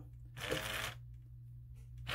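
Automatic foaming soap dispenser's small pump motor whirring for about half a second as it pushes foam out of the nozzle into a hand.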